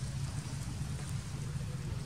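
Steady low rumble with a faint hiss over it and a few faint ticks.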